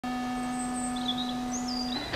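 Birds chirping, several short gliding calls, over a steady low hum.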